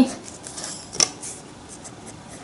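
Marker pen writing on a paper workbook page: faint scratching strokes with one sharp tap about a second in.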